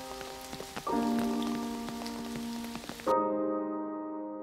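Steady rain falling on a puddle on pavement, a hiss with many small drop ticks, which cuts off suddenly about three seconds in. Soft background music with held chords comes in about a second in and runs on after the rain stops.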